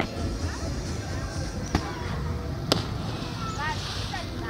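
A person jumping off a harbour wall into the sea and landing with a splash, with wind buffeting the microphone. Two sharp knocks about a second apart, the second the loudest, and voices calling out near the end.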